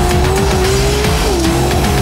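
Off-road desert race truck's engine running at high revs as it drives past on a dirt course, its note dipping about halfway through, under background music.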